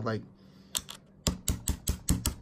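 A quick series of small, sharp plastic clicks and taps as 3D-printed token holders are handled and set down on a cutting mat.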